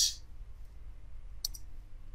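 A single sharp computer click about one and a half seconds in, from a mouse button or keyboard key, over a faint low steady hum.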